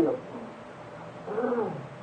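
Steady hiss of an old tape recording. About a second and a half in comes one short, faint vocal murmur that falls in pitch, like a listener's "mm" in response to the preacher.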